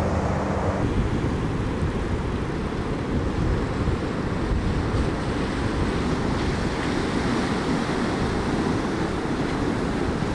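Waves breaking and washing up a sandy shore, with wind buffeting the microphone. A low steady hum is heard only in the first second and cuts off abruptly.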